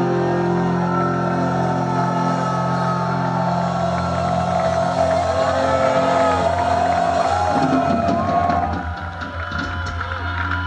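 Rock band playing live and loud: electric guitar bending and sustaining notes over a held low chord, with drums. The sound carries the echo of a large hall.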